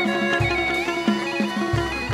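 Chầu văn ensemble playing an instrumental passage: plucked moon lute (đàn nguyệt) notes with small pitch bends over sustained accompaniment, and deep bass notes sounding twice.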